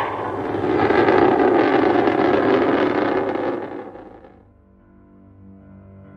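A loud, steady rushing noise that fades away about four seconds in. Soft music with long held notes then comes in.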